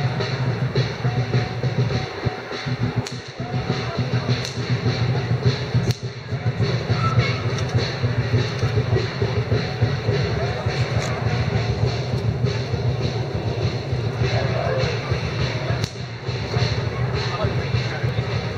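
Music mixed with voices, over a steady din of street noise, with a few sharp knocks.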